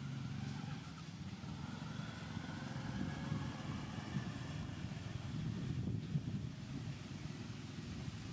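A motor vehicle's engine running: a steady low rumble with a faint whine that rises slightly a few seconds in.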